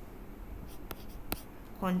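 Stylus writing and drawing on a tablet screen: light scratching with a few sharp taps of the pen tip, the clearest two about half a second apart in the second half.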